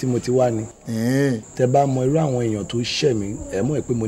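A man speaking in conversation, in a low voice with fairly even pitch, over a thin steady high-pitched whine.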